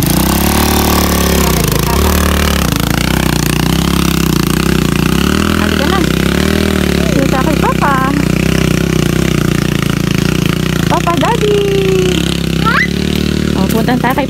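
Dirt bike engine running, its revs rising and falling over and over.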